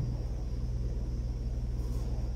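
Steady low hum with a faint hiss over it, unchanging throughout: background noise from the church's building or sound system.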